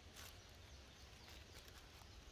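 Near silence: faint outdoor room tone with a low hum and one faint, brief rustle shortly after the start.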